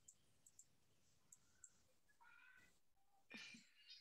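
Near silence with a few faint clicks in the first half, then two brief, faint pitched sounds in the second half.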